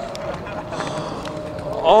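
Faint outdoor background noise with a few light clicks and a steady faint tone. Near the end a man breaks into a loud, drawn-out shout of "oh" that slowly falls in pitch.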